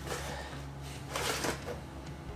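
Iridescent reusable tote bag rustling and crinkling as a boxed figure is pulled out of it, in two short bursts, the louder one a little over a second in.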